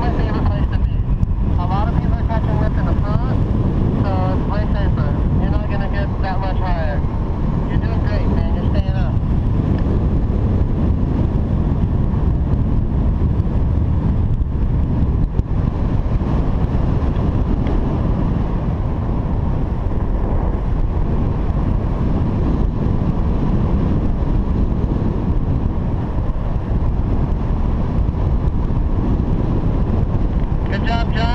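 Steady rush of wind buffeting the microphone of a camera carried on a paraglider in flight. A wavering pitched sound comes and goes over the top during the first nine seconds.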